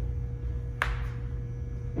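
Steady low hum of the room with a faint constant tone, broken by one sharp click a little under a second in.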